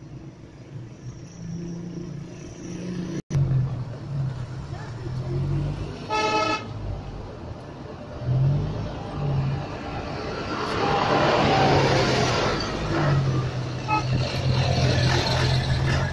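Vehicle horn sounding once, briefly, about six seconds in, over the steady hum of engines and traffic noise heard from inside a car in slow traffic.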